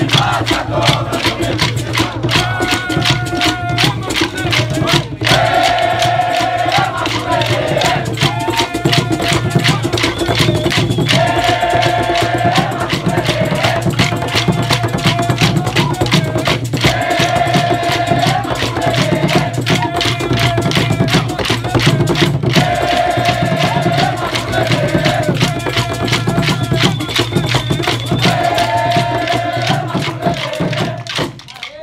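Maculelê music: many wooden sticks clacking together in a fast steady rhythm over atabaque drums, with a group singing a short chant phrase that returns every five or six seconds.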